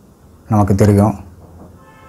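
A man's voice saying one short word or drawn-out syllable about half a second in, over otherwise quiet room tone.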